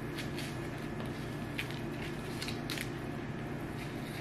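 Frozen banana peel being pried and torn off by hand: a few faint, scattered crackles and tearing sounds.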